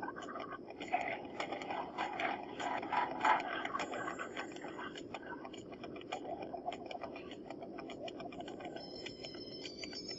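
Light irregular clicks and scrapes throughout, with low murmured voices in the first few seconds.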